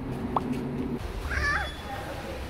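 A toddler's short, high-pitched excited squeal, wavering in pitch, a little past halfway through.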